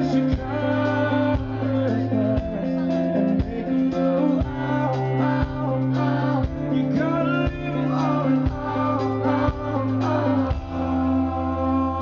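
A live band plays a pop song: a male lead vocal sings into the microphone over strummed guitar and a steady bass line.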